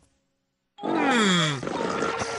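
A cartoon character's voiced grunt, sliding down in pitch, starting a little under a second in and trailing into shorter vocal noises.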